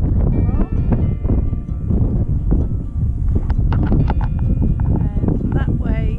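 Wind buffeting the camera microphone on an exposed clifftop: a loud, continuous low rumble, with faint higher tones above it.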